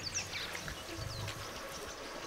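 Birds chirping in the background with several short, high calls that fall in pitch, over a faint low rumble.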